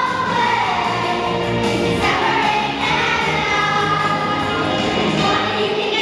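Children's choir singing a song together, with steady low instrumental accompaniment underneath.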